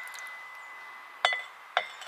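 Metal garden trowel clinking against a white sink. The ring of one clink carries on at one steady pitch, then two more sharp clinks come about half a second apart in the second half, each ringing briefly.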